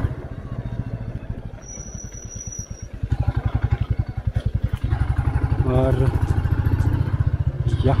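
Single-cylinder motorcycle engine pulsing at low revs. It eases off, then picks up again from about three seconds in as the throttle reopens. A thin high whistle sounds briefly about two seconds in.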